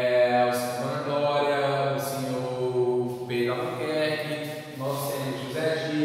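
Only speech: one man talking in long, drawn-out syllables.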